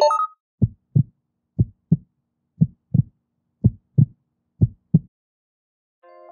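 Heartbeat sound effect: five double 'lub-dub' thumps, about one a second, stopping about a second before the end.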